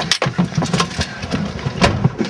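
A car engine running, with a few sharp knocks over it; the loudest comes near the end.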